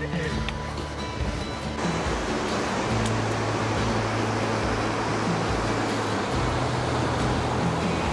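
Background music with sustained low notes, joined about two seconds in by the steady wash of ocean surf breaking on rocks.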